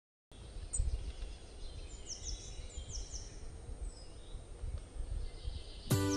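Faint ambient birdsong: short, high, falling chirps, several in a row, over a steady low background rumble.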